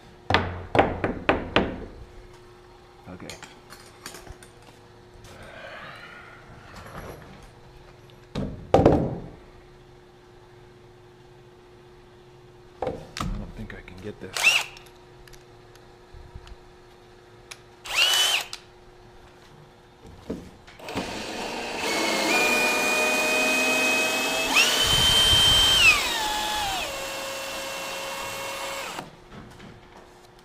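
Cordless drill driving a screw into framing lumber, running for about eight seconds in the second half, its whine stepping up in pitch and then falling away. A few knocks and taps come before it.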